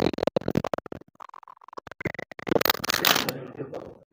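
A man's voice in short broken bits, then about a second and a half of scratchy rustling noise near the end that fades out.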